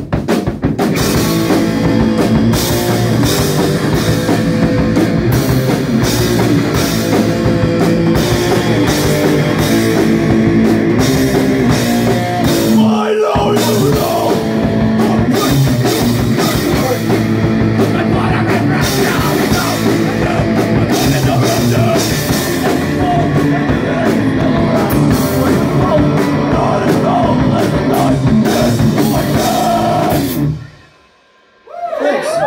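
A loud heavy rock band playing live: electric guitars, bass and drum kit, with the vocalist shouting into the microphone. The low end drops out for a brief break about thirteen seconds in before the band comes back in.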